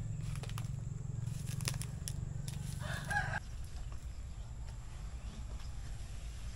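A rooster crowing briefly about three seconds in, over a low steady hum that cuts off just after the crow.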